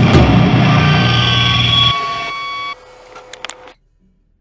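Final hit of a grindcore drum take ringing out: cymbals and drums decay, most of the sound stops about two seconds in, and a thinner ring lasts almost a second longer. A few light clicks follow before the sound cuts off.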